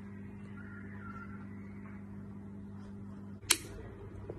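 A low steady hum, then a single sharp click about three and a half seconds in.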